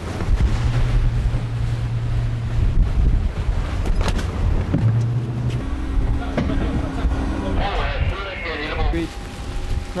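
Ship's boat davit winch hoisting a rigid inflatable boat aboard: a low motor hum that starts and stops in spurts, with a metallic knock about four seconds in. Crew voices call out near the end.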